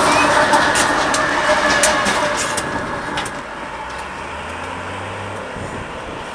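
Ferromex diesel locomotives running light, passing close by, with sharp clicks and clatter from the wheels over the rails. About three seconds in the sound fades, leaving a lower, steady engine drone as the units move away.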